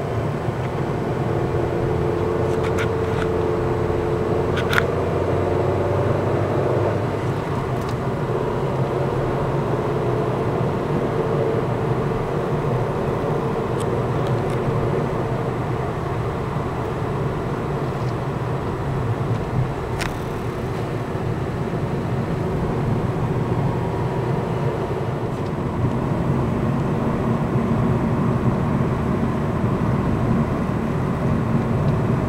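Road and engine noise heard inside a moving car: a steady low rumble and hiss, with an engine hum that holds for the first several seconds. A few light clicks, one sharper about two-thirds of the way through.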